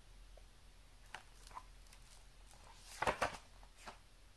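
Quiet handling noise from a picture book: a few light clicks, then a short cluster of louder knocks and rustles about three seconds in and one more just before the end, as the book is moved out of view.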